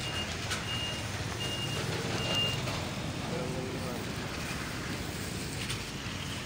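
A vehicle's reversing alarm beeps, a run of short, high, even beeps about two-thirds of a second apart that stops about two and a half seconds in, over a steady background of street noise.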